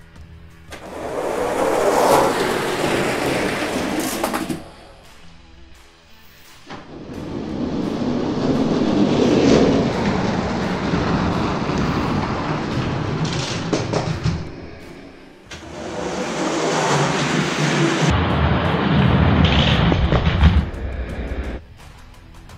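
Small die-cast monster truck toys rolling fast down a plastic race track, heard as three loud stretches of rushing rolling noise of a few seconds each, with background music underneath.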